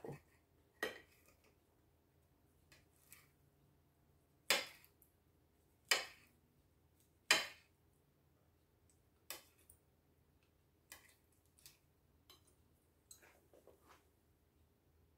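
Kitchen knife chopping fresh pineapple on a ceramic plate: sharp clicks of the blade striking the plate, one every second or two, with quiet gaps between cuts.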